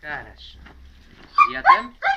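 Dogs barking and yipping, with two loud calls in quick succession near the end.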